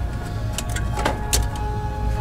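Handling noise: a low rumble with a few light knocks as a light-up pumpkin marquee sign is lifted off a store shelf.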